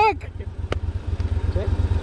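Motorcycle engine idling with a low, even pulse, and a single sharp click less than a second in.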